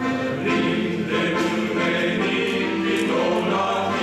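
Men's vocal ensemble singing together in harmony, holding long notes that change every second or so.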